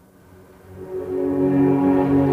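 Solo cello and string chamber orchestra playing long, sustained bowed notes. The sound rises from quiet to full strength over about the first second and a half, then holds.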